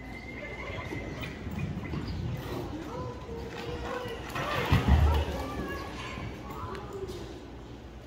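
Spectators' voices calling out while a barrel-racing horse gallops on arena dirt, its hoofbeats mixed in. A brief, loud, deep rumble comes about five seconds in.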